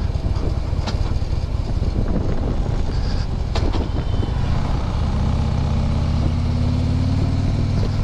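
Harley-Davidson touring motorcycle's V-twin engine running as the bike rolls at town speed. The engine note grows steadier and rises slightly in pitch about halfway through.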